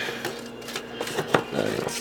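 A scoop scraping and clicking inside a nearly empty canister of powdered dog-food supplement, with a few light knocks spread through it.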